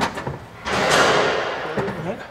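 A sharp knock, then a scraping rush of about a second that fades away, as a mechanic works a hand tool on the electric drive's components in the engine bay.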